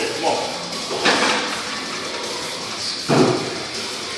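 Loud shouting in a gym during a heavy bench press attempt: one shout about a second in and a longer, louder one about three seconds in, over steady background noise.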